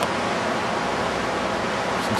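Steady rushing of the Santiam River's flowing water, an even, unbroken noise.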